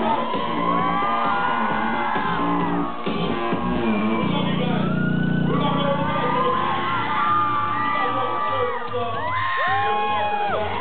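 Loud live music through a PA in a hall, with a vocalist on microphone and the crowd whooping and shouting. A deep low note swells and holds for about two seconds around the middle.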